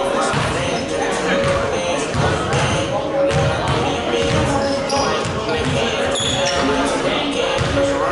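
Basketball bouncing on a hardwood gym floor, with music and voices carrying through the gym.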